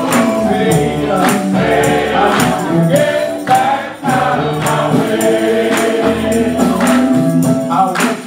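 Men's gospel choir singing in harmony, backed by a bass guitar and percussion keeping a steady beat.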